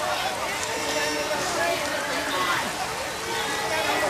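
Many women's voices chanting together in a Pulapese dance, several pitches overlapping, over the steady hiss of rain.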